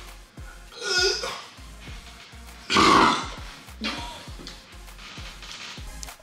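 A man burping from a stomach full of heavy burger, the loudest and longest burp about three seconds in, with smaller ones about a second in and near four seconds. Background music with a steady beat runs underneath.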